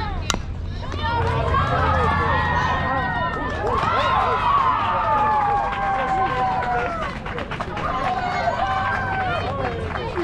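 A softball bat cracks against the ball once, just after the start. Several high voices then yell and cheer over one another for most of the rest.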